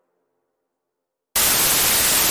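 Silence, then about a second and a third in, a sudden loud burst of static hiss cuts in: a glitch transition sound effect.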